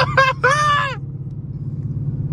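Dodge Charger Scat Pack's 6.4-litre HEMI V8 cruising at highway speed, a steady low drone heard inside the cabin. A person's drawn-out voice is heard over it in the first second.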